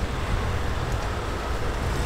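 City road traffic: a steady rumble and hiss of cars driving past.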